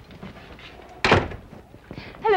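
A door shutting with a single loud slam about a second in.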